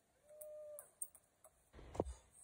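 A wild bird gives a single steady whistled note of about half a second in quiet woodland, followed by a few faint clicks and a dull thump near the end.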